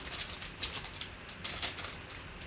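Black wrapper of a sealed trading-card pack being torn open by hand, giving a scatter of small irregular crinkles and crackles.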